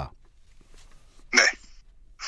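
Speech only: a pause in a conversation, then a short spoken "ne" (yes) about a second and a half in.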